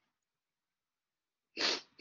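Two short explosive bursts of breath noise from a person close to a microphone, like a sneeze, the first slightly louder, coming in quick succession near the end.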